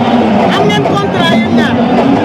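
Speech over the steady chatter of a crowd.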